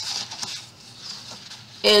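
The 1-2-3 Punch Board's plastic scoring tool is drawn along the board's groove, scratching across the paper in a short stroke at the start, then fainter rubbing.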